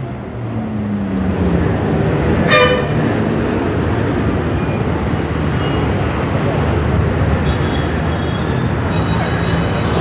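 Busy street traffic with a steady rumble of engines and tyres. One short vehicle horn toot sounds about two and a half seconds in.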